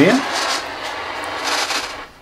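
Spirit box radio sweeping rapidly through AM and FM stations, giving a steady hiss of radio static with faint rapid flickers as it steps from channel to channel. The hiss drops away sharply at the very end.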